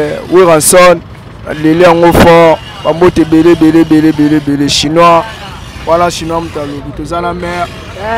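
A man speaking, with a steady engine hum from vehicles underneath.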